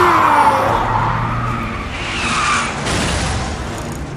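Car braking hard, its tyres squealing in a skid. The squeal is loudest at the start, with a shorter second squeal a little past halfway, then it fades.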